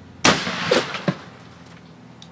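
A single gunshot firing a .356 130-grain hollow-point bullet into a plastic water jug, followed by a spray of water for about half a second and a sharp knock about a second in as the jug is thrown.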